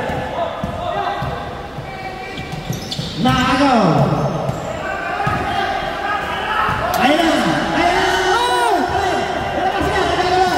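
Basketball game play on a hardwood court: the ball bouncing and sneakers squeaking in short chirps, echoing in a large gym.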